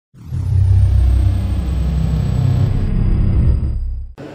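Intro sound effect for a logo reveal: a deep, loud rumble with a thin high tone that glides down at the start. It fades away near the end.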